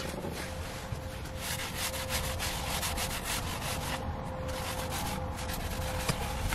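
A cleaning wipe rubbed briskly back and forth over the back of a leather car seat, in rapid scrubbing strokes that come in runs.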